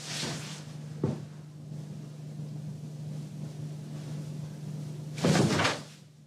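Bedclothes rustling loudly in a short sudden burst near the end as a sleeper jerks awake and flings off the covers, over a steady low hum. A light knock comes about a second in.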